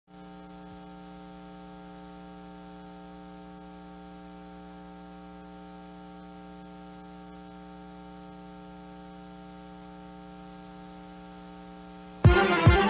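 Low, steady electrical hum with a stack of buzzy overtones and faint hiss beneath, unchanging throughout, with no other sound.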